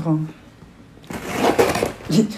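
A parcel being handled and opened: a dense crinkling, rattling rustle of packaging that starts about a second in and grows louder.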